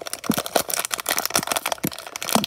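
Plastic Lego minifigure blind bag crinkling and crackling as it is pulled and torn open by hand, in a dense run of irregular crackles.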